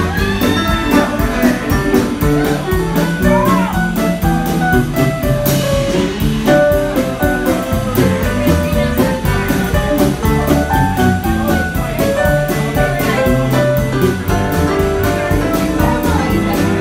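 Live country band playing an instrumental break: a lead electric guitar with bent notes over bass guitar and drums.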